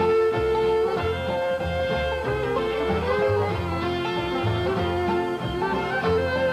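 Bluegrass band playing the instrumental opening of a slow song: a fiddle leads with long bowed notes, over acoustic guitar and low bass notes on the beat.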